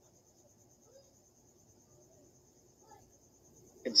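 Near silence: faint room tone with a thin steady high hiss and a couple of barely audible murmurs.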